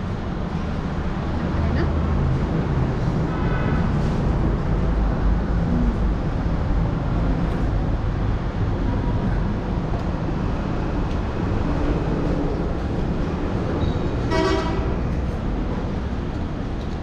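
Road traffic rumbling steadily, with a vehicle horn tooting faintly about three seconds in and a louder, short horn blast near the end.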